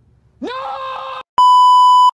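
A man's drawn-out shouted 'No!', then a loud, steady electronic test-tone beep of the kind played with TV colour bars, starting abruptly late on and cutting off sharply.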